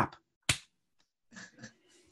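A single sharp hand slap about half a second in, a palm smacking against the forehead.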